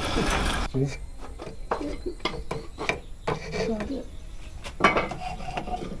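The steady running noise of a horse-driven saw rig cuts off under a second in. After it come scattered light clinks, knocks and scrapes of hand tools and wood being handled on a workshop bench.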